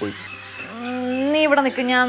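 A voice holding one long drawn-out vowel for about a second, rising a little in pitch before it drops, amid dialogue.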